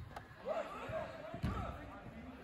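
Soccer ball struck twice, giving two dull thuds: one right at the start and one about one and a half seconds in. Players' voices call faintly in the background.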